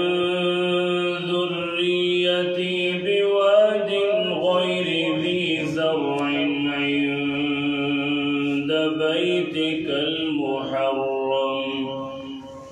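A man chanting Quran recitation in the drawn-out melodic tajweed style. He holds long notes with slow ornamental turns of pitch, and the phrase fades away near the end.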